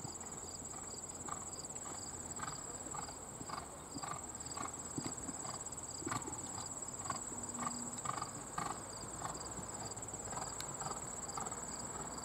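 Hoofbeats of a horse cantering on arena dirt footing, a dull beat about twice a second, over a continuous high-pitched buzz of insects.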